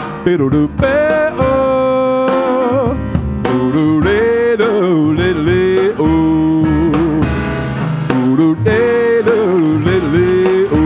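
Male voice singing long held notes that bend and waver, over jazz accompaniment from piano and upright bass.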